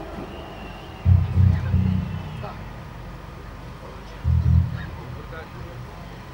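Faint live band music from a stage sound system, broken by two short, loud low thumps: one about a second in, the other a little after four seconds.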